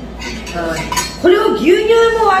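Light clinks of a metal utensil against a small stainless-steel tin and dishware, a few short strikes in the first second. In the second half a voice comes in and is louder than the clinks.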